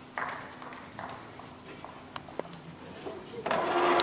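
Faint voices in a hall, with a few light knocks; the sound grows louder near the end.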